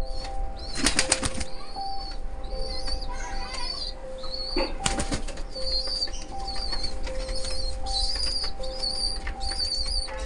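Fantail pigeons flapping their wings in a loft, in two short bursts about a second in and about five seconds in.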